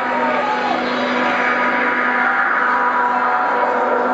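Steady, ringing drone of held tones from the band's stage amplifiers after the song has ended, over a wash of crowd noise.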